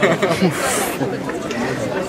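Indistinct chatter of people talking close by, with a short hiss about half a second in.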